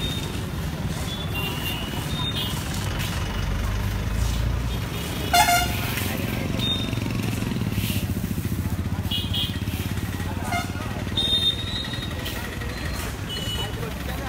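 Road traffic with engines running and a vehicle horn blast about five seconds in, a shorter honk near eleven seconds, and scattered short toots, over background voices.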